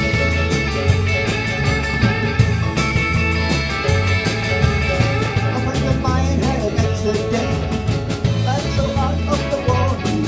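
Live rock-and-roll band playing: electric lead and rhythm guitars, bass guitar and a drum kit keeping a steady, even beat.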